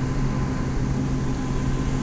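Steady low mechanical hum of running equipment, with a faint higher tone held above it.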